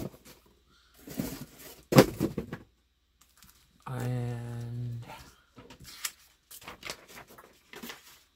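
Plastic-bagged comic books being fanned and handled on a wooden table: crinkling of the bags, with one sharp tap about two seconds in, the loudest sound. About four seconds in, a man's voice holds a steady hum for about a second.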